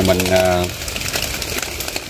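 A man's voice speaking briefly, then a quieter stretch of outdoor background with faint scattered clicks.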